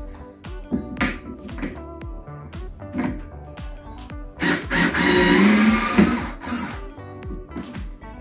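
Background music with a steady beat. About four and a half seconds in, a Skil cordless power screwdriver runs for about a second and a half, backing a screw out of a wooden hutch shelf.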